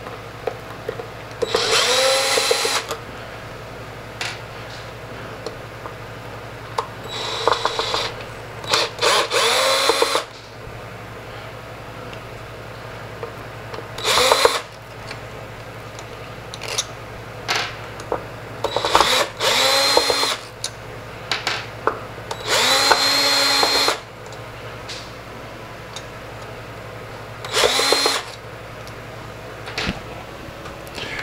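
Cordless drill-driver running in about seven short bursts of a second or so each, backing out small screws from around a turntable spindle. The motor's whine rises in pitch at the start of each burst.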